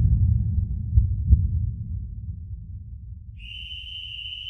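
A deep low rumble with two thuds about a second in, dying away; near the end a steady high-pitched tone starts and holds.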